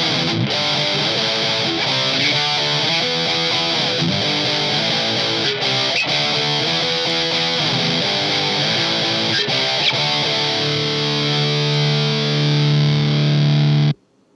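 Single-coil electric guitar played through an amp-modelling preset with distortion, a run of changing notes and chords; near the end a chord is held, then the playback cuts off suddenly. A steady hiss runs underneath: noise the single-coil pickup picks up from the lights overhead.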